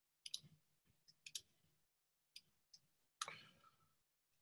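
A handful of faint, sharp clicks, scattered irregularly, as a computer is worked, with one slightly longer noise about three seconds in.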